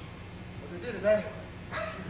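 A man's voice speaking in short phrases, over a steady low hum.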